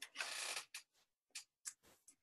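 Faint desk handling at the presenter's microphone: a short rustle, then four light, separate clicks of a computer mouse being moved and clicked.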